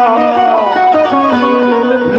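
Live qawwali music: a quick melodic run of stepping notes over a steady lower tone, played loud.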